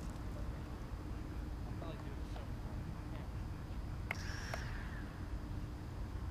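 Steady low outdoor rumble with faint distant voices, and a click followed by a short electronic beep a little after four seconds in.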